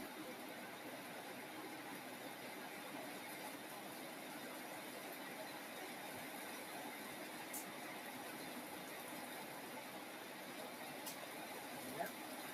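Quiet room tone: a steady faint hiss with no voice, broken only by two faint clicks in the second half.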